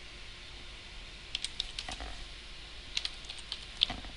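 Computer keyboard typing: a few light keystrokes about a second and a half in, then a quicker cluster near the end, as the word "return" is typed.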